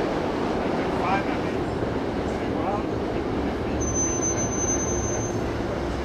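City street noise: a steady low rumble of traffic, growing a little heavier about two-thirds of the way through, with indistinct voices of people chatting nearby.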